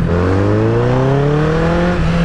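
Honda sportbike engine accelerating, its pitch climbing steadily and smoothly as it pulls through a gear.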